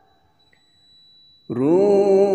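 A man reciting the Quran in melodic chant. A pause follows as the previous phrase fades out, then about one and a half seconds in a new phrase begins, its pitch rising and then held on a long note.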